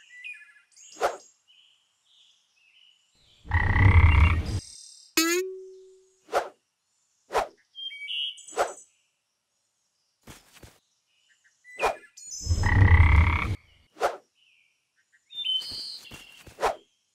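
Cartoon sound effects over light bird chirps: a string of short sharp pops, two loud low buzzy sounds about a second long each, and a whistle that slides down and settles on a held note about five seconds in.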